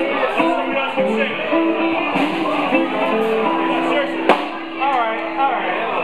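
Electric guitars playing held notes and short phrases in a live band, with people talking over them. A single sharp knock sounds a little after four seconds in.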